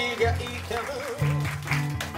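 Two acoustic guitars playing a song live, with a wavering held note above a pulsing bass-note rhythm.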